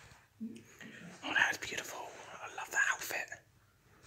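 A person whispering, in short bursts from about one second in until about three and a half seconds in.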